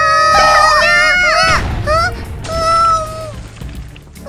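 High-pitched cartoon character voices crying out in long held calls that drop in pitch at the end, over background music.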